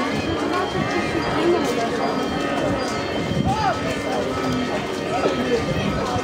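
A crowd walking together: many overlapping voices chattering over the steady shuffle of footsteps on cobblestones.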